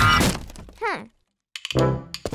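Cartoon sound effects over a children's music track: the music drops away, a quick falling whistle-like effect sounds about a second in, then after a short silence a thunk as the music comes back in near the end.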